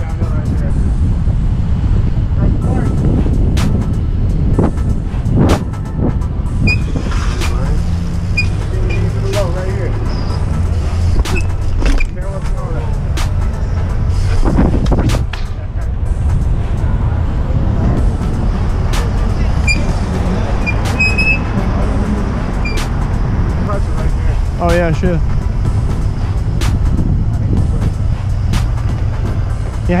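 Wind rumbling on an action camera's microphone as a BMX bike rolls along a concrete sidewalk, with many sharp knocks as the wheels cross pavement joints and bumps.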